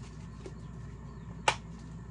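A plastic seasoning-shaker lid snapping shut once, sharp and loud, about one and a half seconds in, after a faint click near the start. A countertop air fryer's fan hums steadily underneath.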